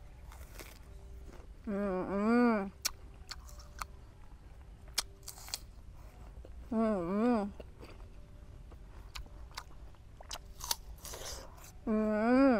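Crisp bites and chewing of a juicy wax apple, a few short sharp crunches scattered through. A woman hums 'mmm' with her mouth full three times, about two seconds in, about seven seconds in and at the very end.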